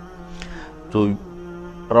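Background music: a steady, sustained low drone held on one pitch, with a man's single spoken word briefly over it about a second in.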